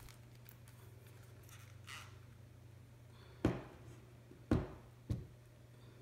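Quiet room with a faint steady hum, broken in the second half by three short knocks, the first two about a second apart and the third close after.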